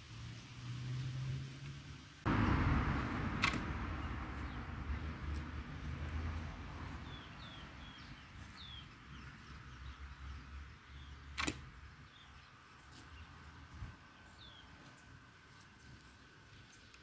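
A sudden rush of noise comes in about two seconds in and slowly fades, with two sharp clicks and a few short, falling bird chirps.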